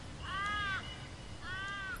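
A crow cawing twice, each call drawn out for about half a second and arching up then down in pitch, a little over a second apart.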